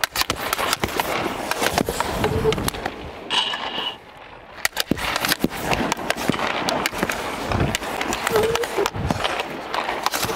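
Ice hockey skates scraping and carving on the ice, with repeated sharp clacks of a stick on pucks and pucks striking goalie pads, heard close through a clip-on microphone.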